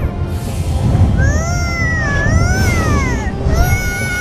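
High-pitched cartoon children's voices giving long, wordless whoops of delight, rising and falling in pitch, over music and a low rumble.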